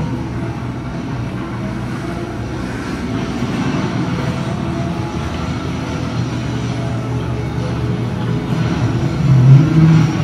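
Arcade game room din: several lit arcade cabinets playing their music and sound effects at once in a steady wash, with a louder low tone swelling near the end.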